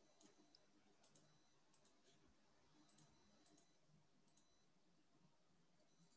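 Near silence with a scattering of faint, short clicks from a computer mouse and keyboard being worked.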